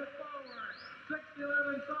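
Speech: a male announcer reading out a basketball player's height and class, "six-eleven sophomore", with a short pause in the middle.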